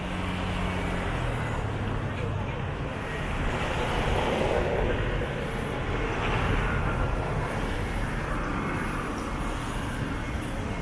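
Street traffic noise: a low, steady engine hum for about the first second, then vehicle noise that swells through the middle and eases off again.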